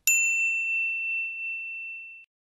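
A single bright bell ding, the notification-bell sound effect of an animated subscribe button, struck once and ringing on in one high tone that slowly fades.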